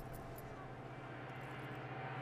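A steady low hum under faint background noise, with a few faint ticks near the start.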